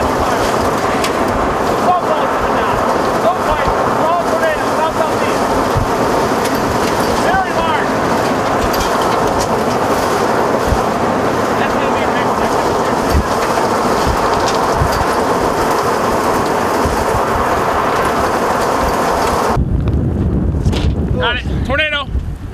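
Strong storm wind rushing over the microphone, a loud, steady noise. About 19 seconds in it cuts to a deeper, duller buffeting.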